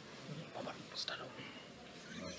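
Quiet, indistinct speech: low talking, too soft and far from the microphone to make out.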